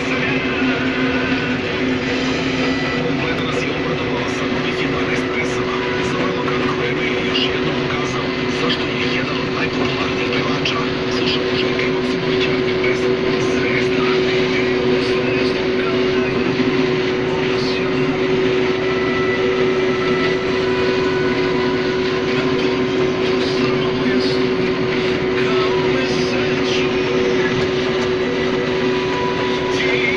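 Case IH 1620 Axial-Flow combine harvesting corn under load, heard from inside the cab: a steady drone of the diesel engine and threshing machinery with a constant whine. A running crackle comes from stalks being snapped and pulled in through the corn header.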